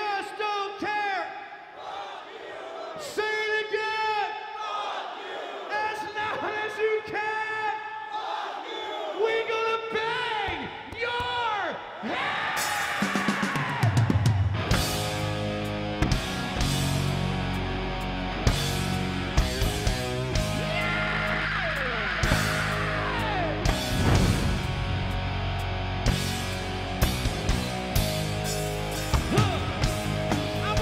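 Live rock concert: about twelve seconds of shouted call-and-response between the singer and the crowd, then the full band comes in loud with heavy drums, crashing cymbals and bass. A long falling glide cuts through the music twice.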